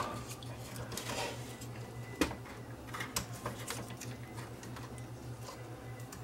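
Small clicks and taps of metal and plastic parts being handled in a VCR's tape transport mechanism, with one sharper click about two seconds in and a few lighter ones soon after, over a steady low hum.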